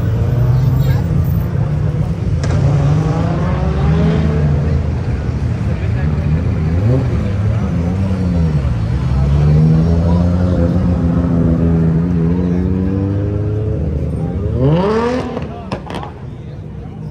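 Engines of cars driving past, with a low engine drone whose pitch dips and rises as they move off. Near the end one car engine revs sharply upward.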